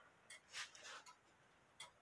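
Faint, uneven ticking of several mechanical cuckoo clocks hanging together, their ticks out of step with one another.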